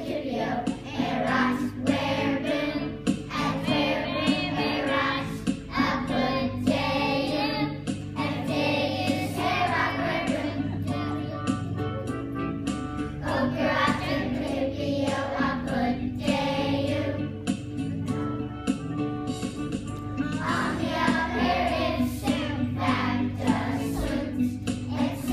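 A children's choir singing together over instrumental accompaniment, with held low notes changing every couple of seconds beneath the voices.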